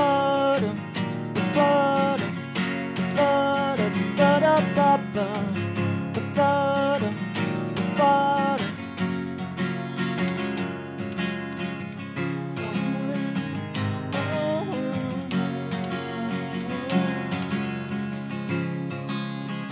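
Acoustic guitar strummed in a steady pattern, with a wordless sung vocal line gliding over it for about the first half, then the guitar going on mostly alone.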